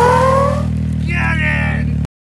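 Side-by-side UTV engine running and revving as it drives past, its pitch rising over the first half second, with a person's voice briefly in the second half.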